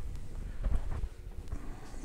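Faint handling noises as a container is worked to tip isopods out: a scatter of light taps and rustles over a steady low rumble.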